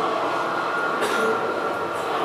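Soundtrack of documentary footage played through the room's speakers: a loud, steady, noisy din with a high held tone through most of it.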